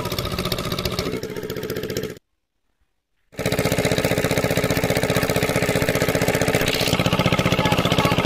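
Small engine-driven water pump running steadily while it pumps out a pond. About two seconds in the sound cuts out completely for about a second, then the engine returns louder with a fast, even beat.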